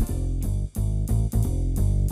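Yamaha CK88 stage piano played on a jazzy live-set patch: a run of short, separate notes, about four a second, over a strong bass.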